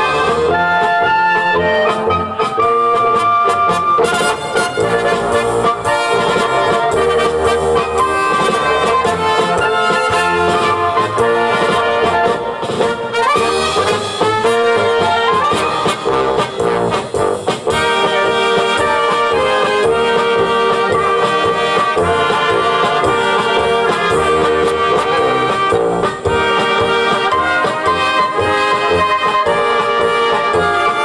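A brass band playing a dance tune live: trumpets and flugelhorns, clarinets, tenor horns and tubas over a drum kit, in the Czech dechovka style.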